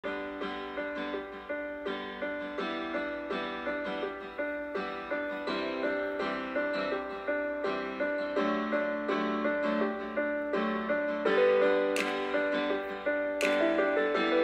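Instrumental song intro: a keyboard playing repeated chords in a steady rhythm, about two to three strikes a second, growing a little louder toward the end, where a couple of brighter hits come in.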